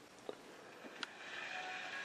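Mostly quiet, with a few faint clicks; about a second in, faint sound with several steady high tones fades in from the television set's speaker.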